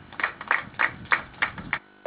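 Hands clapping in a steady rhythm: six sharp claps about three a second, stopping just before the end.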